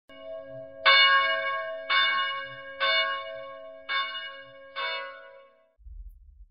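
A bell struck five times, about once a second, each stroke ringing on and fading; the first stroke is the loudest and the ringing dies away shortly before the end.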